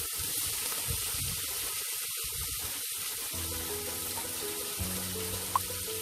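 Sliced onions sizzling as they go into hot coconut oil in a pressure cooker, a steady hiss.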